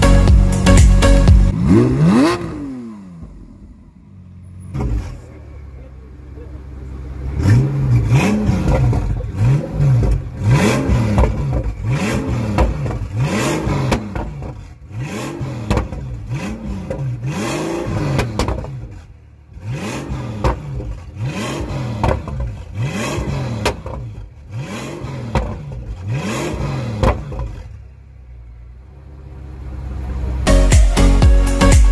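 Pagani Huayra's twin-turbo V12 being revved again and again at a standstill, about one rev a second, each rev climbing and then dropping back. Before that, background music with a steady beat fades out in the first couple of seconds.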